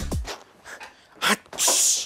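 Electronic intro music with a pounding beat cuts off just after the start. It is followed by a man's short voiced burst and then a sharp hissing exhale of about half a second.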